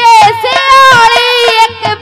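A woman singing a Haryanvi ragini through a stage PA, holding long high notes with a slight waver, over quieter instrumental accompaniment.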